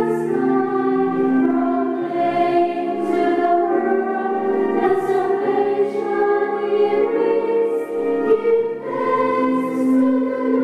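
A small choir of women singing a Christmas hymn in harmony, with the line "Proclaim to the world the salvation he brings." The notes are held and change pitch every second or so.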